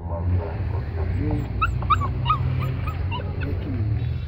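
Dogs whimpering and yipping in many short, high squeaks, over a steady low hum.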